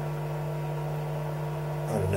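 Steady electrical hum over a faint hiss from a speaker system fed by a synthesizer while no notes are played. The owner suspects poorly shielded connecting leads.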